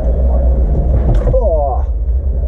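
A steady low rumble, with a man's voice heard briefly a little past a second in.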